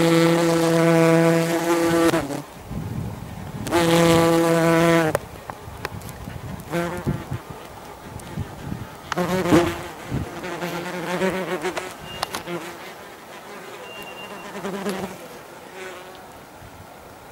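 Yellowjacket wasps buzzing in flight close to the microphone: a loud, steady wingbeat hum for about two seconds, then again for about a second, then fainter, shorter buzzes as wasps come and go.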